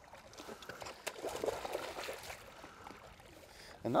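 Hooked sturgeon thrashing and splashing at the water's surface beside the boat, in uneven bursts that are busiest in the middle.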